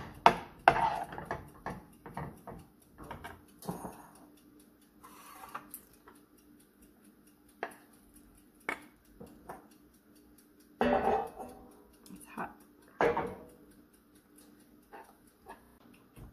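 Metal spoon scraping and clinking against a stainless steel saucepan as thick, sticky caramel dough is stirred and worked loose, in irregular taps and scrapes with a louder flurry of scraping about two-thirds of the way through.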